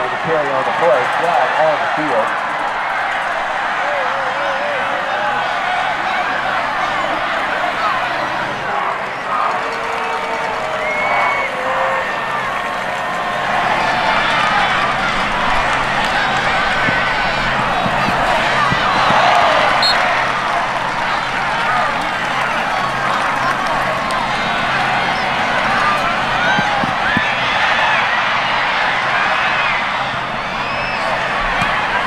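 Football stadium crowd: many voices yelling and cheering at once in a steady din that swells briefly about two-thirds of the way through.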